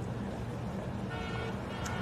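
Steady low rumble of street traffic ambience. In the second half, a distant car horn holds one steady note for about a second.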